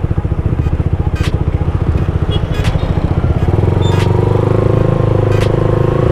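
Motorcycle engine idling with a fast, even beat, then picking up revs and pulling away about three and a half seconds in, with a few sharp clicks along the way.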